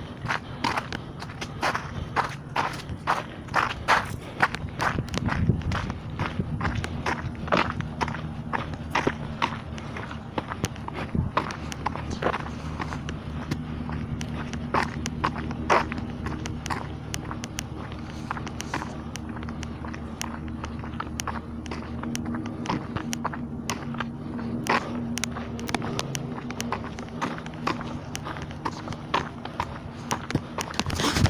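Footsteps of a person walking at a steady pace, about two steps a second, with the clicks and rubs of a handheld camera, over a steady low hum.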